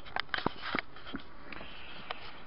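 A quick run of small clicks and knocks in the first second, then a couple of lighter ones, with the hiss of a small room underneath: handling noise while the camera is carried and swung around.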